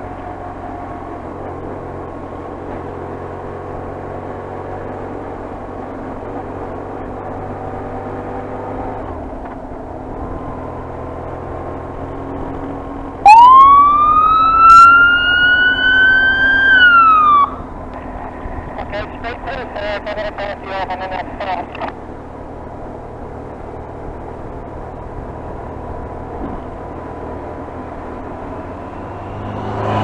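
Police motorcycle electronic siren sounding a short, loud wail that rises for about three seconds, dips and cuts off, followed by a few seconds of rapid pulsing tones. Under it runs the steady sound of the BMW R1150RT-P's boxer-twin engine and wind at riding speed.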